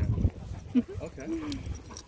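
Dogs playing and chasing on grass. There are low thuds near the start, then two short wavering vocal sounds about a second in.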